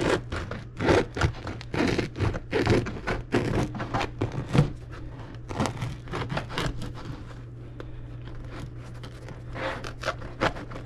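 A kitchen knife sawing back and forth through a loaf of bread with a chewy crust on a plastic cutting board. The strokes come in a quick, busy series through the first half, ease off, then pick up again near the end.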